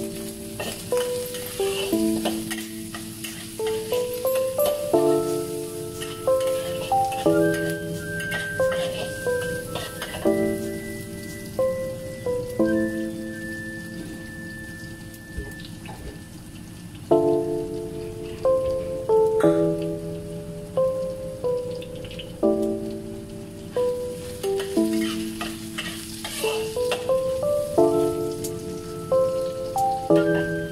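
Minced pork and sliced mushroom sizzling in a wok, with a metal spatula scraping and clicking against the pan as the food is stirred. Instrumental background music with a repeating melody plays over the frying.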